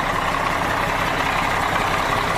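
A 2005 Mack Granite's Mack AI-427 diesel engine idling steadily.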